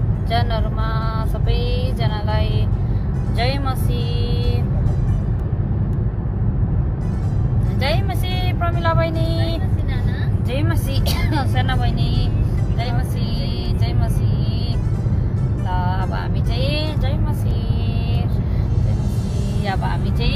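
Steady low rumble of a car cabin on the move, with singing voices over it, some notes held and gliding.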